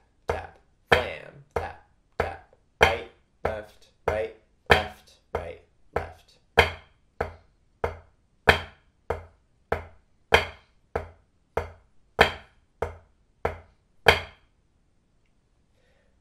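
Drumsticks striking a drum practice pad set on a marching snare, playing flam accents slowly as quarter notes: even strokes about one and a half a second, every third stroke louder as the accented flam, stopping about two seconds before the end.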